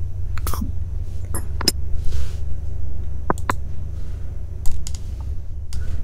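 Scattered clicks from a computer keyboard and mouse, about eight of them at uneven spacing, over a steady low hum.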